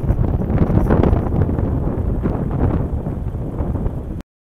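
Wind buffeting the microphone outdoors: a loud, uneven low rumble.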